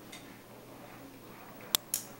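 Quiet room, then two sharp clicks in quick succession near the end.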